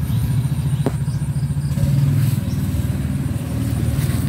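A small engine running steadily close by: a low, even rumble with a fast regular pulse, and a single brief click about a second in.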